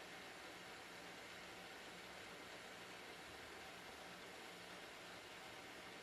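Near silence: a faint, steady hiss of room tone with a faint low hum.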